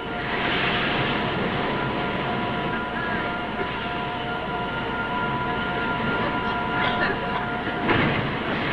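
Steady rushing wind sound effect, with a few thin held notes running through it that stop just before the end.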